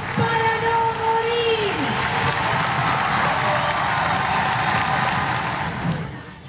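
Protest crowd: a long held shouted note for about the first two seconds, then cheering and applause that fill the rest.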